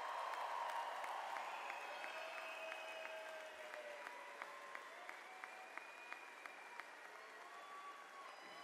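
Audience applauding, loudest at first and slowly dying away.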